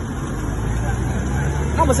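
Street traffic: a motor vehicle engine running close by, a steady low rumble that grows slightly louder through the second half, with a man's voice starting again near the end.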